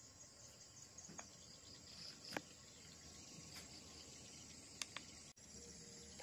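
Faint, steady high-pitched chirping of insects, with two short sharp clicks, one about two seconds in and one near five seconds.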